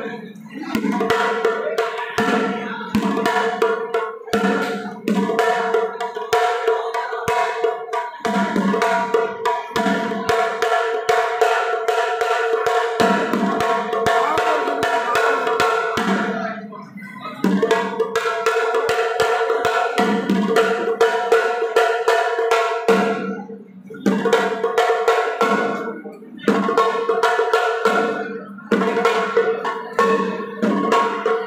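Festival drums struck rapidly with sticks, with a sustained pitched melody held over them that breaks off briefly three times.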